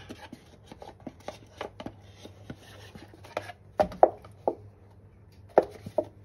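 Scattered clicks, taps and soft knocks as beans are tipped from a paper carton into a stainless steel saucepan, the carton squeezed and handled over the pan. The loudest knocks come about four seconds in and again near the end.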